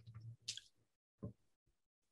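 Near silence in a pause between sentences, broken by two faint, brief mouth sounds from the speaker at the microphone: a lip click about half a second in and another about a second later.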